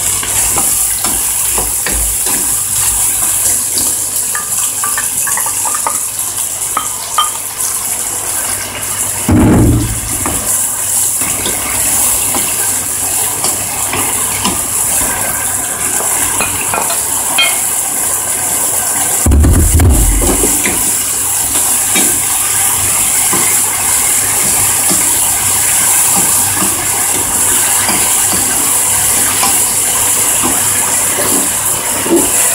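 Chicken, leek and pumpkin sizzling steadily in a hot frying pan as they are stir-fried, with small clicks and scrapes of the utensils against the pan. Two dull thumps come about a third of the way in and again about two-thirds in.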